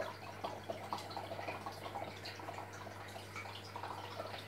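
Faint trickling and dripping of aquarium water, with small irregular ticks of droplets over a steady low hum.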